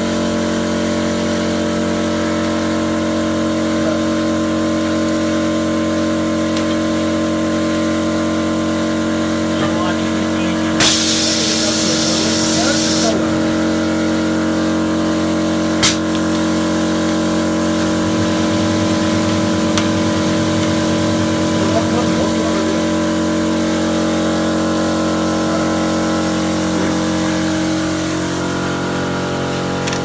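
Thermocol plate making machine running with a steady hum of several fixed tones. About eleven seconds in, a hiss of air lasts about two seconds, and a single sharp click comes near sixteen seconds.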